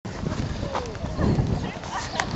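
Hoofbeats of a showjumping horse cantering over a sand arena, with indistinct voices of people nearby.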